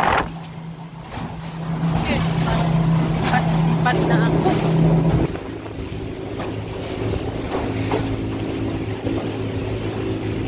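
Outboard motor of a small boat running at speed over rushing water and wind. About five seconds in, the loudness drops and the steady engine note gives way to a lower, different-pitched one.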